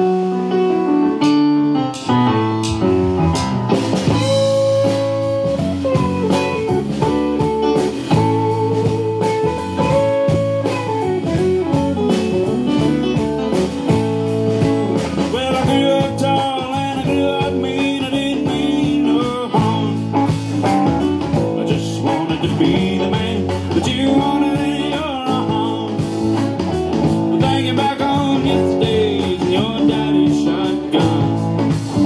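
A live band playing a song with acoustic and electric guitars, keyboard, bass guitar and drum kit, loud and continuous, with a steady beat.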